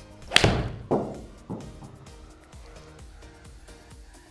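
A Titleist T300 iron strikes a golf ball with one sharp, loud impact about a third of a second in, followed by two fainter thuds over the next second, over background music.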